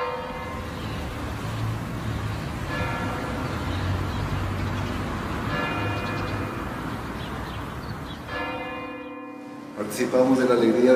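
Church bell tolling four times, one strike about every three seconds, each stroke ringing on and fading away.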